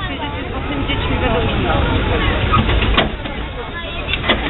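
People talking close by over the low rumble of a narrow-gauge railway carriage rolling slowly past, with one sharp clank about three seconds in.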